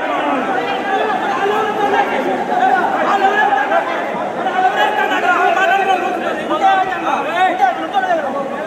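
Crowd of men talking over one another, many voices overlapping at once with no single speaker standing out.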